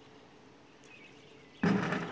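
Quiet outdoor background with a few faint chirps, then a sudden loud noise about one and a half seconds in that fades out over about half a second.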